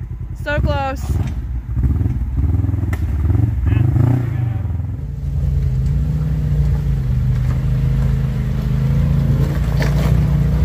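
Off-road UTV engines: an engine revs up and down in uneven bursts for the first few seconds, then a side-by-side's engine runs steadily at low revs for the rest.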